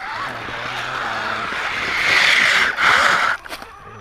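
Electric motors and geared drivetrains of radio-controlled rock crawlers whining as they climb over rocks, the pitch wavering with the throttle. The sound is loudest about two to three seconds in, then drops off suddenly.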